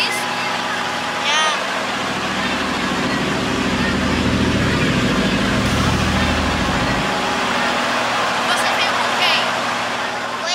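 A riverboat's engine running steadily under way, with water rushing along the hull and the wake splashing against a small canoe alongside. A heavier low rumble swells from about two seconds in and cuts off around seven seconds.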